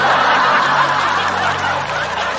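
A studio audience laughing together: a dense, steady wave of many voices laughing at once.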